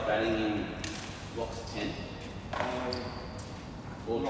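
Indistinct, low-level talk echoing in a large indoor hall, in short snatches, with a few soft knocks.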